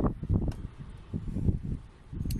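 Wind buffeting the microphone: an irregular low rumble that rises and falls in gusts and eases off near the end.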